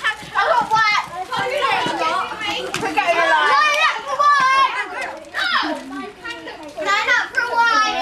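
A group of children shouting and chattering over one another, many high-pitched voices at once with no single voice standing out.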